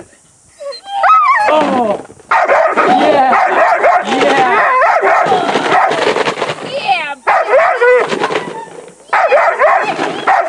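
A shepherd-type protection dog barking and whining in rapid, excited runs from a car window, with a few short breaks.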